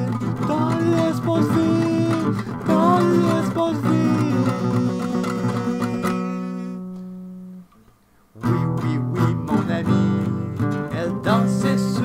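Acoustic guitar strummed, with a wordless vocal line over it. About six seconds in, a chord is left to ring and fade away. After a short pause, strumming starts again about two seconds later.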